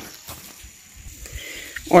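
A pause in a man's speech filled only by faint outdoor background hiss with a thin, steady high tone; his voice comes back near the end.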